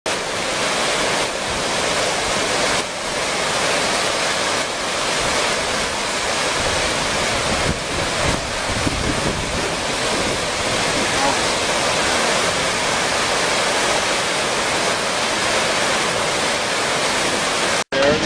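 Floodwater from a swollen river in spate rushing past a covered bridge: a steady, loud, even rush of water.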